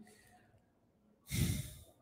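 A man's single sigh, an audible exhalation into a close microphone, a little over a second in and lasting about half a second.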